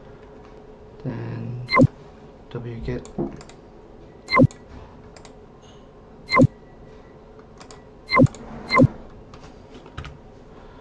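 Computer mouse and keyboard clicks: five loud, sharp clicks spaced one to two seconds apart, with fainter taps between them.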